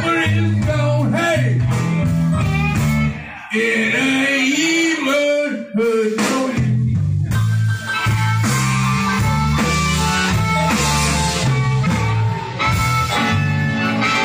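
Live electric blues band: amplified harmonica over electric guitar, bass, drums and piano. About three seconds in, the band drops out for roughly three seconds, leaving a lone lead line bending in pitch, then the full band comes back in.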